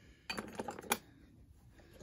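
Quick cluster of small metallic clinks and rattles from an old mortise sash lock, opened and handled, in the first second.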